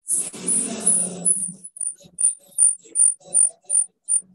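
Invocation audio starting over a video-call feed: it comes in suddenly and loud, and after about a second and a half breaks into short, choppy bursts about two or three a second.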